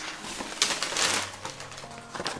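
A paper gift bag rustling and crinkling as it is lifted out of a cardboard box and handled, loudest for about half a second near the middle.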